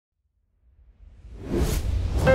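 Whoosh sound effect for an animated logo intro: it swells out of silence about half a second in, with a low rumble underneath, and grows louder up to the end.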